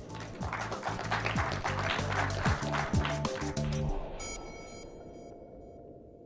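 Audience applauding over closing music with a low bass line. About four seconds in, the clapping stops, a bright bell-like tone rings out and the music fades away.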